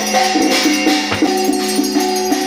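Temple ritual music: a melody that moves note by note over a steady drone, with rapid rattling percussion.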